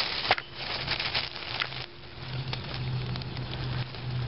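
Crackling rustle of dry leaf litter and plant leaves brushing and handling a camera held close to the ground, with scattered sharp clicks.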